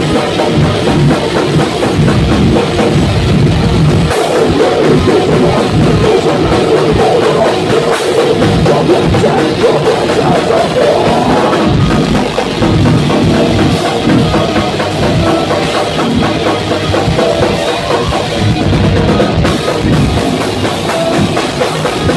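Rock band playing live: electric guitars over a drum kit, loud and continuous.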